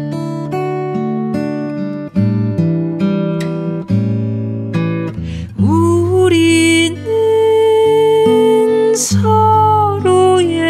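Acoustic guitar fingerpicked in a slow song, with a woman's singing voice entering a little past halfway and holding long notes with vibrato over it.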